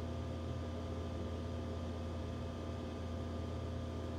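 Steady low hum with a faint even hiss over it: room tone, with no other event.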